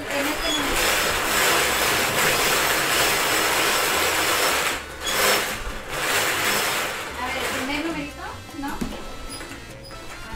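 Numbered balls rattling and tumbling inside a spinning wire bingo cage, loud for the first seven seconds with a short break about five seconds in, then quieter.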